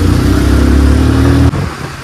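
Motorcycle engine running under steady throttle with a loud, low, even note, cutting off abruptly about one and a half seconds in and leaving quieter road and wind noise.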